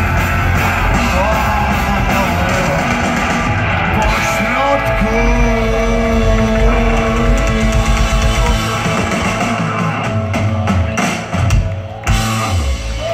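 Punk rock band playing live: distorted electric guitar and drum kit, loud and dense, with held notes in the middle. The bottom end thins out near the end, leaving a few separate drum hits.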